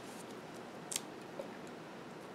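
A light, sharp click of sticker tweezers about a second in, with a fainter tick shortly after, over low room hiss.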